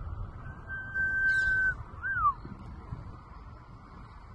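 Low rumble dying away after a distant explosion, recorded outdoors on a phone. About half a second in, a steady high whistle sounds for about a second, followed by a short rising-then-falling whistle.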